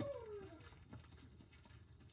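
The end of a drawn-out whining call, gliding down in pitch and fading out in the first half second, followed by faint soft footsteps on a dirt path.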